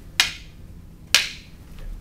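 Two sharp clacks of walking canes striking each other in a block-and-counter exchange, about a second apart, each trailing off briefly.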